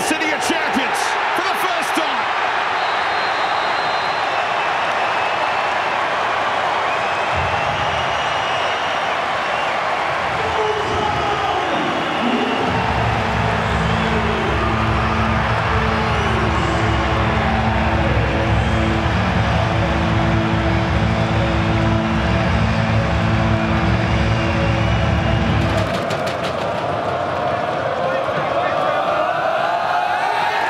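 Large stadium crowd cheering at the final whistle of a football match. From about twelve seconds in, music with a heavy bass line plays over the crowd, stopping suddenly about four seconds before the end.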